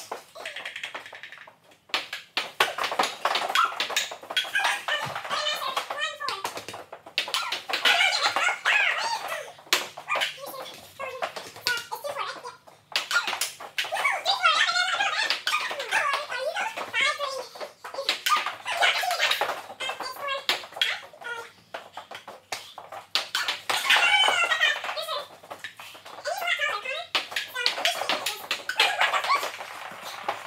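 Ping pong ball clicking repeatedly off the table and paddles during play, with children's high-pitched voices calling out over it for much of the time.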